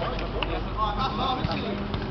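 Men's voices calling out and talking around an outdoor futsal court, with a couple of brief sharp knocks.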